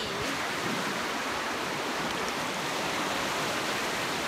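Sea surf washing onto a sandy beach: a steady, even rush of noise.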